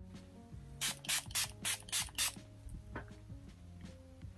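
Six quick pumps of a Milani Fruit Fetish setting spray misting onto the face, each a short hiss, about four a second, starting just under a second in.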